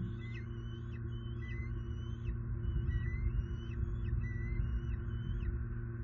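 A bird calling over and over in short, high notes, about three a second, some sliding up and some dropping sharply, over a steady low hum.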